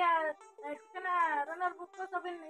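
A woman's voice in two high-pitched, drawn-out phrases, a short one at the start and a longer one about a second in, over quiet background music.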